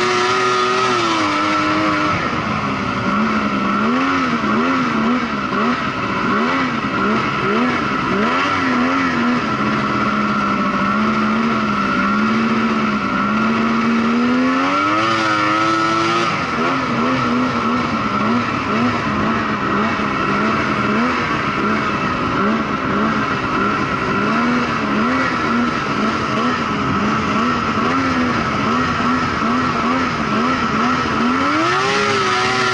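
Snowmobile engine running under throttle while riding over snow, its revs rising and falling constantly, with a longer climb in revs about halfway through before dropping back. A steady high whine sits above the engine throughout.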